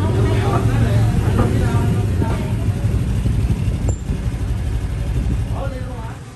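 Motor scooter engine running close by, a steady low rumble, with people talking over it; the rumble cuts off at the end.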